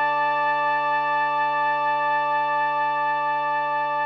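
Instrumental music: a single sustained note or chord held steadily, unchanging in pitch and loudness.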